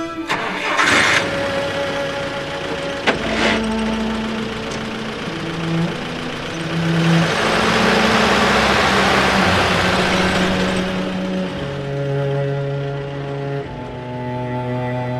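WWII-style military jeep's engine starting with a couple of short bursts, then running, its noise swelling for several seconds before easing off. Sustained orchestral string music plays underneath.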